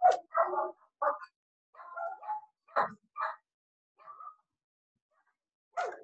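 A fluffy pet dog barking in a run of short, sharp barks, loudest at the start, then a pause and one more bark near the end, heard over a video call.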